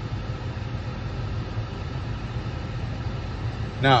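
Steady road and engine rumble inside the cabin of a moving Mazda car, driven on an underinflated tire.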